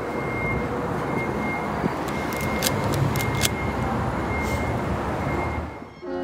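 Street traffic noise: a steady rumble of cars on the road with a faint high whine, fading out at the very end.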